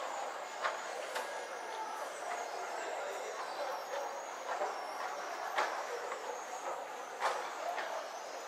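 Open-air city-square ambience: a steady wash of distant traffic and faint far-off voices, with a few brief clicks and knocks scattered through it.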